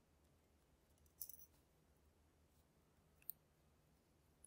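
Near silence with a few faint, small metal clicks, a short cluster about a second in and one sharp click near the end, from a steel pick and tweezers working the tiny pins and springs out of a brass lock cylinder's chambers.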